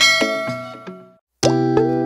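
Intro jingle: a bright struck chime with several ringing notes that fades over about a second, then a short gap, and plucked guitar-like music starting about one and a half seconds in.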